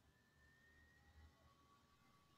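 Near silence: faint room tone on a video-call recording.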